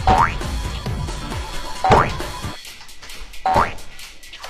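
Three cartoon 'boing' spring sound effects, each a quick rising glide, coming a little under two seconds apart over background music. They are timed to a person hopping in a mermaid-tail costume.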